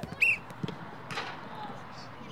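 Children's voices and play sounds during an indoor football game, over a steady background hubbub. There is a short high-pitched call just after the start, a thud about two-thirds of a second in, and a brief noisy burst a little after one second.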